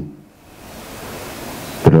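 Steady hiss of microphone and room noise, with no tone or rhythm, swelling gradually after the first half second and holding steady until speech resumes near the end.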